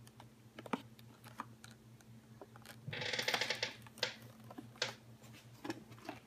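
Rigid clear plastic toy packaging being handled: scattered clicks and taps, with a brief crinkling rustle about halfway through.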